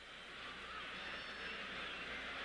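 Football stadium crowd cheering a goal: a steady wash of massed voices, thin and narrow in tone as on an old TV broadcast recording.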